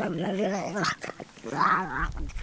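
A dog's pitched, wavering vocal sounds in two stretches, broken off briefly about a second in.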